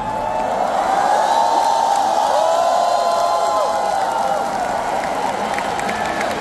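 Large arena crowd cheering and screaming, many voices holding long high shouts that overlap.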